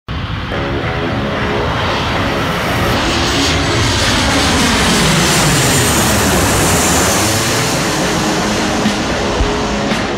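Twin-engine jet airliner passing low overhead on approach: a loud, steady jet roar whose pitch slides down as it goes by.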